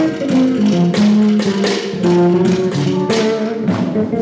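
Small jazz combo playing live: moving pitched lines from the bass, piano and guitar under a steady run of sharp strokes from the drum kit, about three a second.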